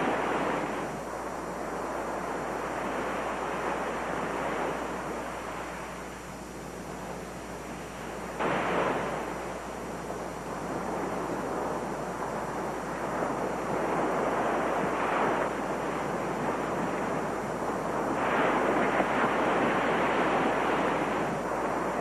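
Sea surf washing onto a beach, swelling and ebbing every few seconds, with one wave breaking sharply about eight seconds in.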